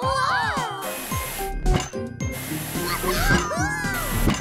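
Cartoon soundtrack: background music with sound effects and wordless character voices that glide up and down in pitch near the start and again near the end.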